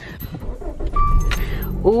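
Low rumbling and rustling from a phone camera being handled and moved about inside a car, with one short electronic beep about a second in.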